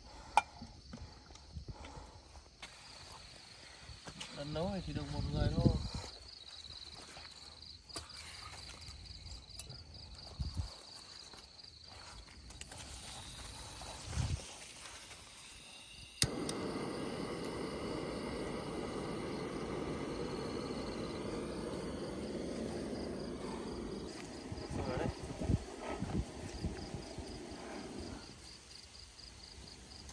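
A handheld butane torch clicks alight about halfway through and burns with a steady hissing flame for about twelve seconds, then goes out.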